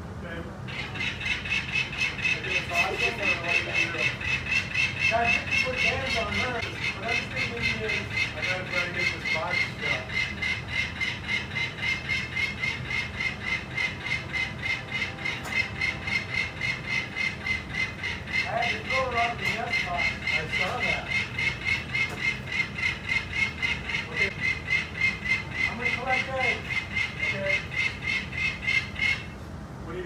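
Peregrine falcon giving its harsh, rapid cacking alarm call, about four calls a second in a steady run. It starts about half a second in and stops about a second before the end.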